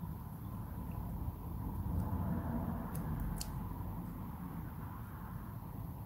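A few faint small clicks, about two and three seconds in, as a metal pick knocks loose plastic support struts off a PLCC chip socket, over a low steady background rumble.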